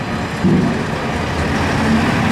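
A heavy machine's diesel engine running steadily, over a busy background din.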